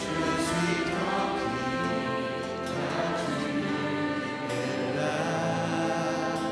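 Small ensemble of violins, flute and trumpet playing the refrain of a slow worship song, with sustained notes changing about once a second.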